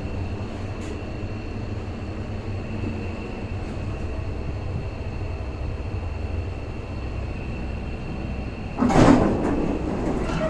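1978 Mitsubishi ACR passenger lift car travelling: a steady low rumble with a faint steady high whine. About nine seconds in there is a loud burst of sliding noise as the car doors open.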